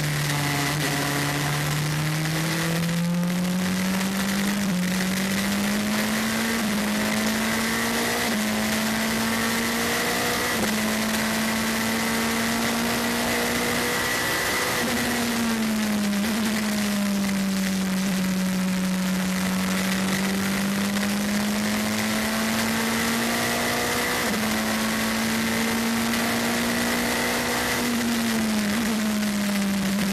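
The Gibson V8 of an LMP2 race prototype, heard onboard, runs at moderate, fairly low revs. Its note rises gently and steps down several times at gear changes, over a steady high-pitched whine.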